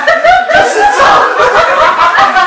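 Several people laughing and talking over one another.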